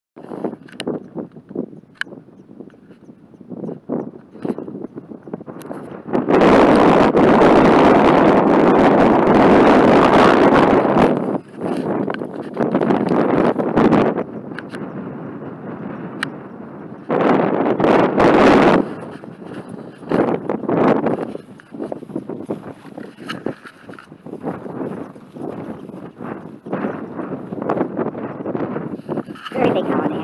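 Strong prairie wind buffeting the microphone: crackling, gusty noise with two long, loud blasts, about six seconds in for five seconds and again briefly around seventeen seconds.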